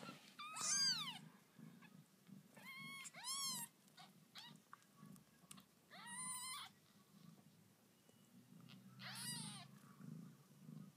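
Newborn kittens mewing: several short, high-pitched calls that rise and then fall in pitch, coming in small groups a few seconds apart. Underneath is a faint, low, steady purr from the nursing mother cat.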